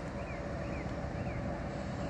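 Steady outdoor background rumble of distant road traffic and wind on the microphone, with a faint steady hum and three faint short chirps about half a second apart.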